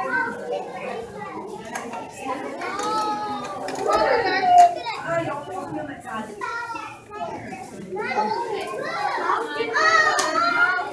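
Young children's voices chattering and calling out over one another, with one louder high-pitched call about halfway through.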